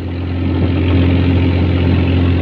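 A small fishing boat's engine running steadily at idle with a low, even hum.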